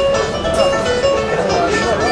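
Algerian chaabi ensemble playing an instrumental passage: plucked banjo and mandole carry a busy, ornamented melody over a steady accompaniment.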